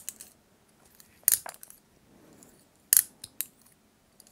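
A few short, sharp clicks: one a little over a second in, then two close together around three seconds, over faint room tone.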